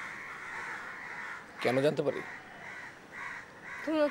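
Crows cawing over and over in the background, short calls following one another without a break, with a single spoken word about halfway through.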